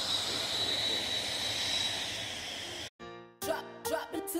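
Small quadcopter drone hovering nearby: a steady high whine over a rushing hiss that cuts off suddenly about three seconds in. Music with a plucked beat starts right after.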